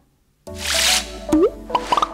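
Channel outro music sting. It starts after a brief silence with a whoosh, then a quick rising bloop and a second whoosh, over steady held synth notes.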